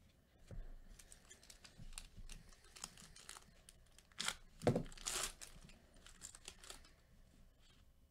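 Foil wrapper of a Topps Chrome baseball card pack being torn open and crinkled by hand. It is loudest in a few sharp rips about halfway through.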